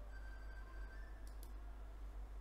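Two quick faint clicks from the laptop about a second and a half in, over a low steady hum.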